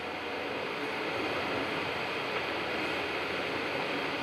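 Steady, even background hiss of the hall's room tone during a pause in speech, with no distinct events.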